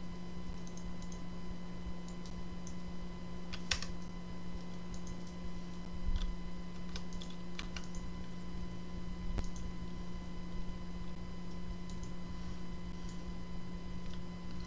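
Computer mouse and keyboard clicks, scattered and irregular, over a steady low electrical hum.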